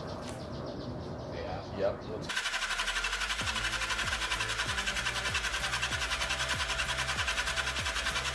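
Cordless drill spinning a Sun Joe cordless reel mower's reel backwards against its bedknife, backlapping to sharpen the blades: a steady, rapidly pulsing metallic rasp over a low motor hum, starting abruptly about two seconds in.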